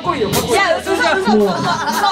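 People talking and chattering in a live-music club, with a short sharp crash about a third of a second in and another near the end.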